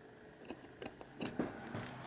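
A few faint, light clicks and taps of a metal screwdriver tip against the motherboard's front-panel header pins, bridging the power-switch pins to start the system.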